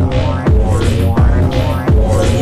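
Electronic dance music from a tekno/house DJ mix: a steady kick drum at about three beats a second over sustained bass notes and chords.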